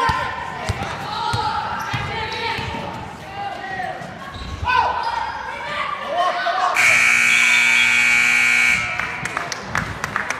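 Gym scoreboard buzzer sounding one steady tone for about two seconds, starting about seven seconds in, marking the end of a period with about 15 seconds called shortly before. Before it, a basketball bounces on the hardwood court amid shouting voices.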